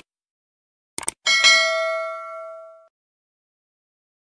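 Subscribe-button animation sound effect: sharp mouse clicks at the start and again about a second in, then a bright bell ding that rings and fades over about a second and a half.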